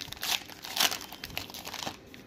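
Foil wrapper of a Prizm basketball card pack crinkling as it is opened by hand: an irregular run of crackles, loudest a little under a second in.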